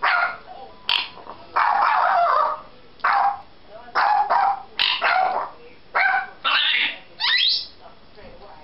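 African grey parrot mimicking a Yorkshire terrier's bark: a run of about ten short, high yapping barks at irregular intervals, one of them drawn out about two seconds in.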